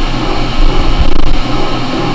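Beaver slotting attachment on a milling machine running at its lowest speed, the slotting ram stroking up and down with a steady mechanical running noise.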